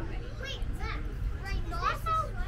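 Children's voices chattering and calling out among the tram passengers in short high-pitched bursts, over the low steady rumble of the moving tram.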